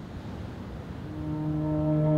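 Ambient music fading in: a low rushing wash, then a sustained drone chord entering about a second in and swelling louder.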